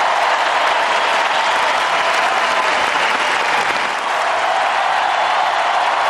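Large arena crowd applauding steadily.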